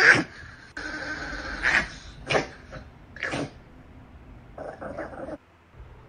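A dog growling and giving several short, sharp barks or snaps, warning another dog off her bed.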